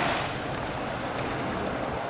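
Steady rush of wind and surf on a beach, with wind buffeting the microphone.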